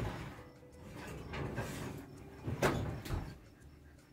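Electric oven door opened and a stone baking pan slid out over the oven rack, scraping, with two sharp knocks about two and a half and three seconds in.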